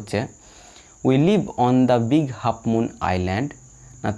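A person speaking, starting after a short pause of about a second, over a steady high-pitched whine.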